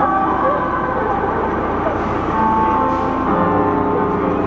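Live concert sound from a large outdoor PA system heard from within the audience: music with held notes and some sliding vocal pitches, over a steady wash of crowd noise.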